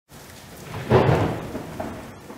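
Steady rain with a roll of thunder that breaks about a second in and then fades.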